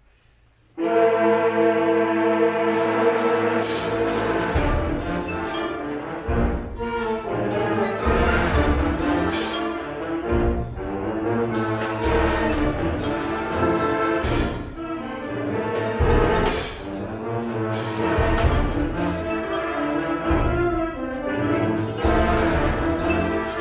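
High school concert band comes in loudly all together after less than a second of silence. It plays held brass-heavy chords over repeated percussion strikes.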